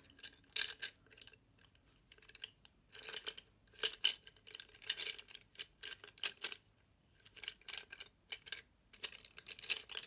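Wooden coloured pencils clicking and clattering against one another as a handful is sorted through, in several short flurries of clicks.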